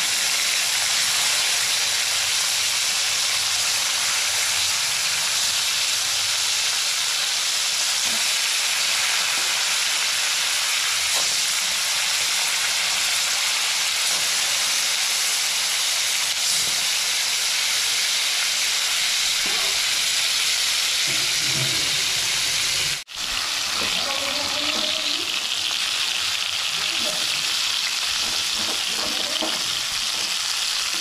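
Masala-coated fish pieces frying in hot oil in a steel kadai, a steady loud sizzle throughout. It breaks off for a moment about two-thirds of the way through.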